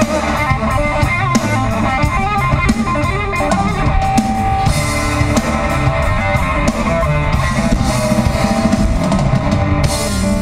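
Live rock band playing loudly: two electric guitars over a drum kit.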